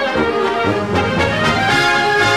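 Military brass band playing an instrumental army song, trumpets and trombones carrying the melody in full, sustained chords.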